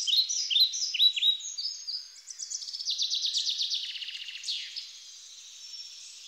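Songbirds singing: repeated short, high chirps sweeping downward, then a fast, rapid trill in the middle that fades to softer, sparser calls toward the end.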